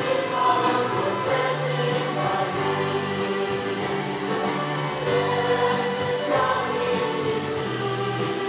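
Slow Christian worship song: a choir singing long, held notes over a bass line that changes every second or two.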